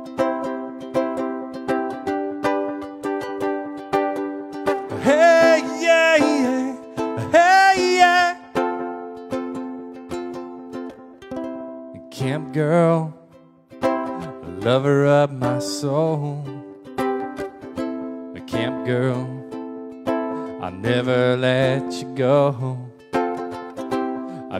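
Ukulele strummed in a steady rhythm of chords, with a man's voice singing phrases over it from about five seconds in.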